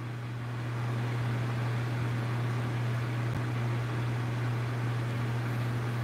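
Steady room background noise: a constant low hum under an even hiss, with nothing else standing out.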